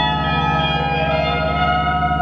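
Fender Stratocaster electric guitar played through effects in an ambient experimental piece: several sustained, layered tones ring over a low drone that pulses rapidly.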